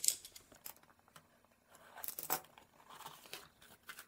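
A cardboard box being opened with a utility knife, then a foam packing sheet and bubble wrap rustling and crinkling as they are handled, in faint scattered scrapes and crackles.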